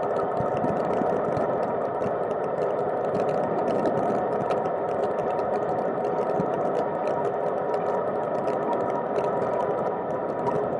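Steady road and wind noise of a cargo bike rolling on wet asphalt, carried through the frame into a hard-mounted camera case, with a constant stream of fine rattling clicks.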